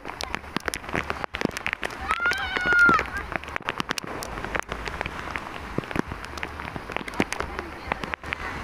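A child's loud, high-pitched kiai shout lasting under a second, about two seconds in, during a karate kata. Many short sharp clicks run throughout.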